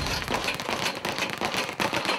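Dense crackling: a rapid, irregular run of sharp clicks over a steady noisy hiss, with no clear pitch.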